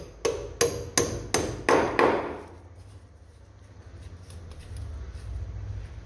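Claw hammer tapping a small piece into a hole drilled in a ceramic floor tile: about five sharp, ringing strikes, roughly three a second, then the strikes stop.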